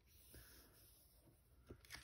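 Near silence, with a faint short scratch of a pencil on card stock about half a second in and a few soft taps of paper and hands near the end.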